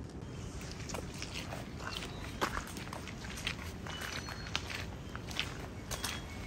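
Footsteps, about two a second, over a steady outdoor background hiss.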